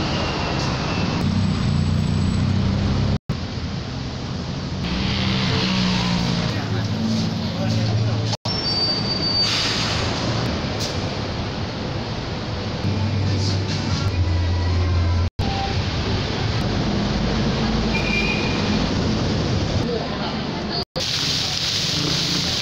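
Busy city street ambience: steady traffic noise with vehicle engines running, and people's voices in the background. It is cut off by four brief silent gaps where short clips are joined.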